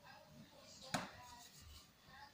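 A single sharp knock about a second in, over faint voices.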